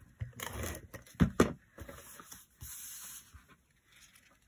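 Adhesive tape runner rolled along the back of a cardstock panel in short, scratchy strokes, with two sharp taps a little over a second in.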